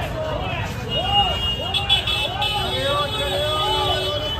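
Busy street-market ambience: a crowd's voices and street noise, over which one voice repeats a short sing-song call about twice a second, like a hawker calling out. A thin steady high tone sounds for about two seconds from about a second in.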